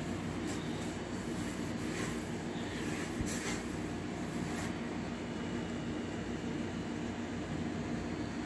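Steady mechanical background hum, with a few short swishes of a cloth rubbed over the sanded tank surface, mostly in the first five seconds.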